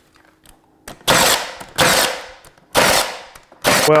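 Four slow, loud hand claps about a second apart, each trailing off with room echo.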